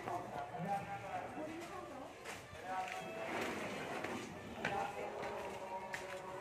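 Voices in the background, in short stretches, with a few faint knocks.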